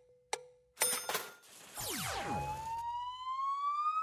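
Cartoon game sound effects: a click, then a short bright chime, then a quick falling glide. A long whistle-like tone follows, rising slowly in pitch through the second half as the tiger picture slides onto its silhouette.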